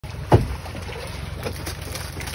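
A boat engine idling with a steady low hum, and a single heavy thump about a third of a second in as a wire crab trap is hauled aboard and knocks against the boat.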